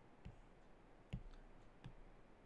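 Faint taps of a stylus on a tablet screen, three short clicks under a second apart.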